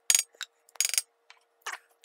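A spatula scraping blended raw meat mixture out of a plastic blender jar into a steel bowl: two short, sharp scrapes about half a second apart, then a few faint ticks.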